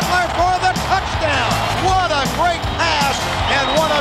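An excited play-by-play call of a touchdown catch, over background music.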